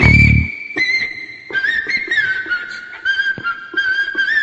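Background music: a strummed guitar part fades about half a second in, leaving a high whistled melody that holds one note, then steps down and wavers over faint light percussion ticks.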